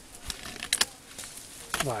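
A few sharp clicks against a low background, then a man's exclamation, "vay", near the end.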